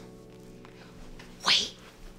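A single loud sneeze about one and a half seconds in, over guitar music that is fading out.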